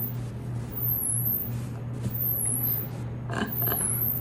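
Room tone with a steady low hum, and a few brief soft noises shortly before the end.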